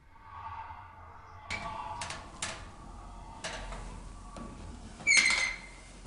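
A door being handled: scattered clicks and knocks from about a second and a half in, then a short, loud, high-pitched squeak about five seconds in, like a hinge or door scraping.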